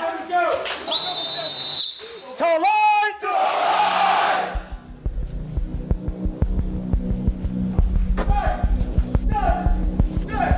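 Drill instructors shouting at cadets, with a short whistle blast about a second in. From about halfway, music with a steady low beat comes in under further brief shouts.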